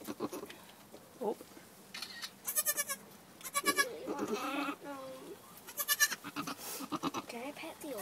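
Newborn goat kids bleating: about four short, high-pitched calls, with softer, lower wavering goat calls in between.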